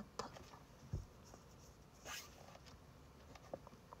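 Faint sound of a pen writing on paper, with scattered small clicks and taps and a low thump about a second in.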